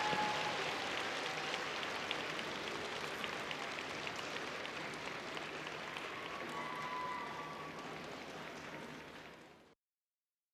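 Audience applauding in a large arena, the clapping slowly dying away and fading to silence just before the end.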